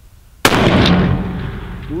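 A single .375 Ruger precision rifle shot: a sudden loud report about half a second in, followed by a long echo that dies away slowly.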